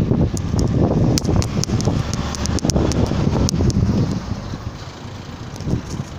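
Wind rumbling on a phone's microphone while moving, with scattered sharp clicks and rattles. It eases off for a moment about four seconds in.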